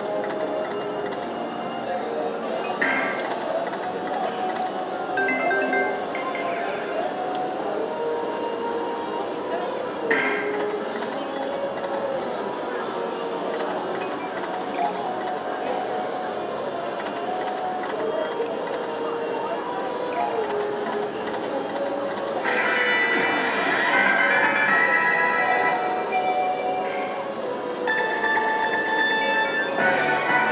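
Legion Warrior slot machine playing its free-games bonus music as the reels spin, with short sharp stops near the start and at about 3 and 10 seconds. Bright bell-like chimes ring out about two-thirds through and again near the end as a line win counts up.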